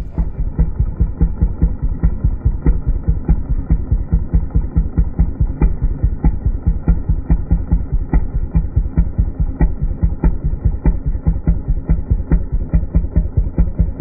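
A small engine idling with a steady, even throb of about five pulses a second, the sound dull and muffled.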